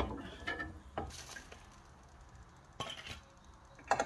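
A few separate knocks and clinks of metal cookware as the lid of a double-sided grill pan is opened and a plate is brought against it, the sharpest knocks at the start and near the end.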